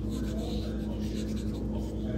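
Small paintbrush dabbing and stroking acrylic paint onto gesso-primed paper: soft, irregular brushing and scratching over a steady low hum.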